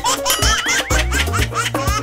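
Background music with a steady beat, overlaid with a rapid, high-pitched giggling laugh effect.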